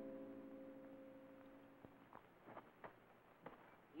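A piano music cue dies away into near silence, then a handful of faint, short metal clicks about halfway through: leg irons being fastened shut around ankles.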